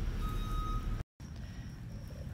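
A vehicle's reversing alarm beeping at one steady pitch, about half-second beeps, over a low rumble. The beeping stops early and, after a brief dropout of all sound about a second in, only the fainter low rumble remains.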